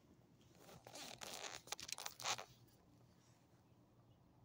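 A burst of rustling and scraping lasting about two seconds, with a few sharp crackles near its end.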